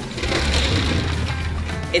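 A fire engine's roll-up compartment door being pulled open, a noisy slide lasting about a second, over background music.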